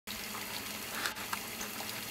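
Steady hiss of water at the boil, with a few light clicks about a second in.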